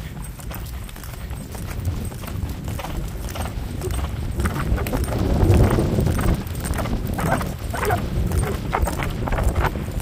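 Horses cantering on grass: a steady run of hoofbeats on turf over a low rumble, growing to its loudest about halfway through.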